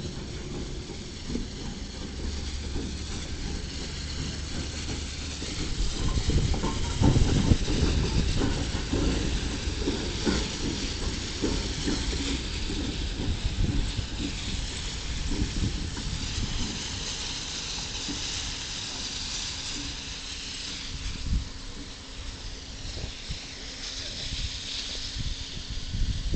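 Steam locomotive hissing steadily, with low rumbling and scattered knocks that are loudest about six to ten seconds in.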